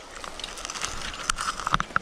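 Spinning fishing reel being cranked fast to bring in a hooked trout, giving a rapid run of fine clicks and crackle, with a few sharp clicks near the end. Weed leaves brushing the microphone.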